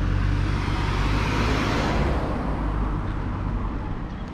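A Mazda car passing close by and driving away. Its tyre and engine noise swells to a peak about one to two seconds in, then fades.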